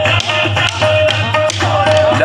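Music: a held melody line with sharp drum strokes beating through it.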